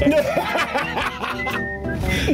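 A man chuckling and laughing over background music; near the end the music carries on alone with long held notes.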